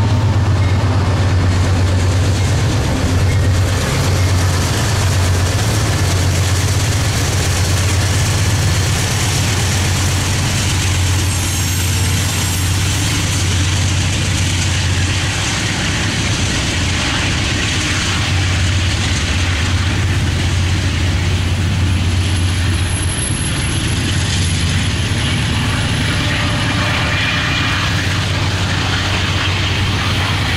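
Freight train passing: hopper and tank cars rolling by on the rails with a steady low rumble and noise of wheels on track. A thin high whine appears briefly near the end.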